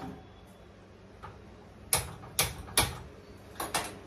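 Five sharp clicks of a gas stove burner's spark igniter as it is lit. The clicks come from about two seconds in, the last two close together.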